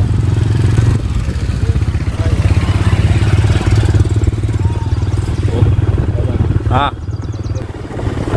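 Motorcycle engine running at a steady pace while riding, with other motorcycles passing close by.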